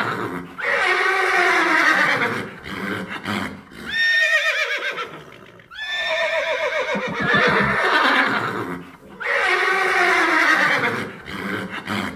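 A horse whinnying again and again: about five long whinnies, each sliding down in pitch with a wavering quality.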